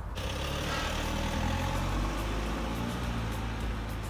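A car, a black SUV, driving away on asphalt: a steady engine and tyre sound with no sudden events.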